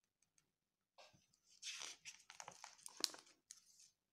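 Faint paper handling: a finger tapping lightly on a book page, then the rustle of the page being turned over, starting about a second and a half in, with a sharp flick of paper near three seconds.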